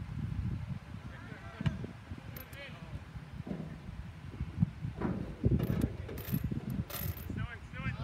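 Sideline sound at an outdoor soccer match: a steady low rumble with distant players' shouts, and a few sharp clicks or knocks in the second half, the loudest sounds here.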